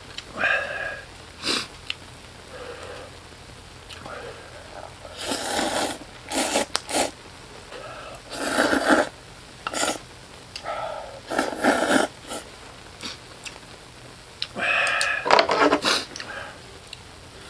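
A person slurping instant ramen noodles, several loud slurps a few seconds apart.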